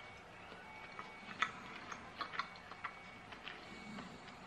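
Faint chewing of a chocolate peanut butter cup: a scatter of small, irregular mouth clicks and smacks.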